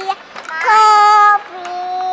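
A child singing long held notes, alternating between a higher note and a lower one, about two notes a second and a half.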